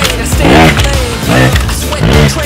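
Trials motorcycle engine revved in two short throttle blips, each rising and falling in pitch, as the bike hops up concrete steps, with background music.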